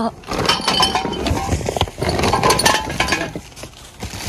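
Groceries and shopping bags being lifted out of a wire shopping trolley and loaded into a car boot: bags rustling, with irregular clattering and clinking of items being set down. It dies down shortly before the end.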